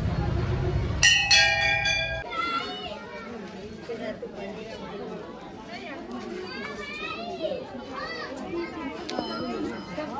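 A temple bell struck once about a second in, ringing with a clear metallic tone that dies away over about a second. After it, many women's and children's voices chatter together.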